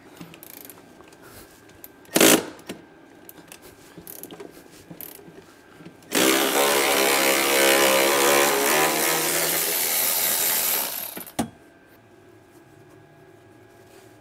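Cordless electric ratchet running steadily for about five seconds, spinning out a front-seat mounting bolt, after a brief burst from it about two seconds in.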